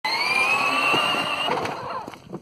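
Plastic rear wheels of a DynaCraft 24V Disney Princess Carriage ride-on squealing on concrete in a quick-stop burnout. It is a high squeal that rises a little in pitch, then fades out about one and a half seconds in.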